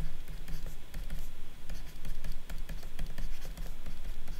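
Stylus writing on a tablet, with quick taps and scratches of the pen tip as handwritten equations are drawn, over a low steady hum.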